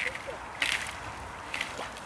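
Wellington boots wading through shallow lake water among thin broken ice: a few short splashing, crunching steps, the loudest a little over half a second in.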